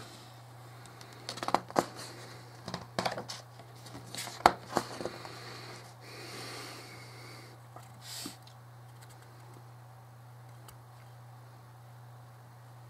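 Fingers handling and turning a small model starship, with a run of sharp clicks and taps through the first five seconds, the loudest about four and a half seconds in. A soft rustle follows, then one brief scrape near eight seconds, over a steady low hum.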